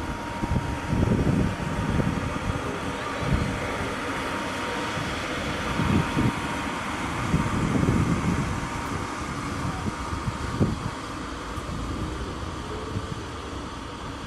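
Electric blower keeping an inflatable bounce house inflated, running with a steady whooshing noise and a thin steady hum, broken by irregular low rumbling thumps.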